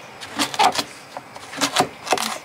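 Cleaver chopping courgette into cubes on a cutting board: several sharp, irregular knocks of the blade going through the vegetable onto the board.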